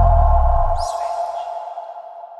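Switch TV channel ident's electronic sting: a deep boom that dies away within the first second under a ringing tone that fades out slowly, with a short high swoosh falling in pitch a little under a second in.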